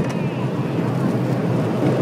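Steady rumble of a small roller coaster car running along its track, with wind on the microphone.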